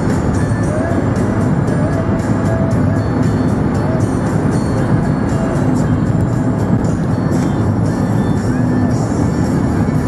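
Music with a steady beat playing on the car radio inside a moving car, over a steady low hum of road and engine noise.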